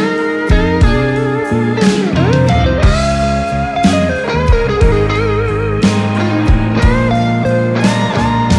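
Blues-rock band playing an instrumental section: a Fender Stratocaster electric guitar takes a lead solo with string bends and wide vibrato over drums and bass.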